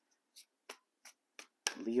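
Tarot cards being handled at the deck: four short, light clicks about a third of a second apart. A man's voice begins near the end.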